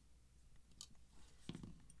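Faint clicks of a screwdriver and a folding knife being handled while the knife is put back together, with a soft knock about one and a half seconds in as the screwdriver is set down on the mat.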